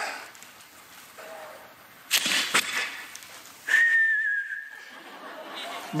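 A person whistling one held note lasting about a second and a half, falling slightly toward its end, just past halfway through. Before it come two short, sharp sounds about half a second apart.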